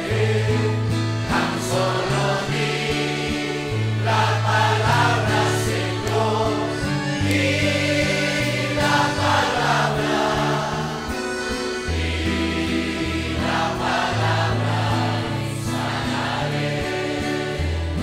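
Church congregation singing a worship song together, many voices at once over steady low sustained notes.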